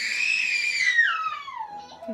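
A baby crying: one long, high-pitched wail that rises a little, holds, then slides down in pitch and fades near the end. The baby is upset and uncomfortable after his vaccination shots.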